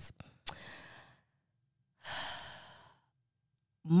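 A woman's breathing in a pause between phrases. There is a mouth click about half a second in with a short breath after it, then a longer sighing breath about two seconds in that fades away.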